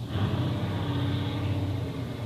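Steady low background rumble, with a faint hum rising out of it in the middle for about a second.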